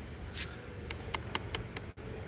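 Low steady room noise with about six faint, light clicks from a hand touching a clear plastic clamshell battery package.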